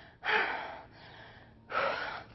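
A woman breathing hard from exertion in the middle of a set of burpees: two loud, rough breaths about a second and a half apart.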